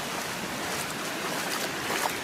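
Small waves washing up over sand in the shallows, a steady hiss of moving water. Near the end a bare foot splashes into the water.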